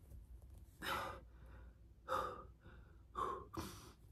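A person breathing hard and gasping during push-ups, with four short, loud breaths about one a second.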